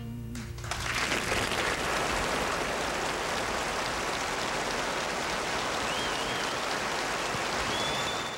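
Studio audience applauding steadily as the last notes of a bluegrass band's song die away in the first half-second. A couple of short whistles rise out of the clapping near the end.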